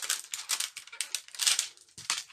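Plastic packaging crinkling and rattling in quick, irregular crackles as rubber stamps are rummaged for and handled. The crackling peaks just after the start and again about a second and a half in.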